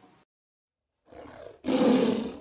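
Tiger roar sound effect. It comes in about a second after near silence as a short, quieter growl, then swells into a loud roar near the end.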